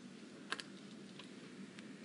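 A few faint clicks of computer controls being operated, the sharpest about half a second in, over a low steady hum of room tone.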